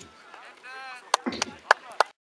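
Two sharp cracks of Jugger pompfen striking, about half a second apart, over low drum beats that count the stones a second and a half apart, with players' voices.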